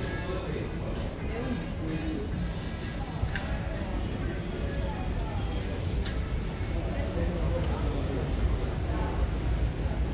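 Busy shop ambience: background music playing over the indistinct voices of shoppers, with a steady low rumble and a few light clicks.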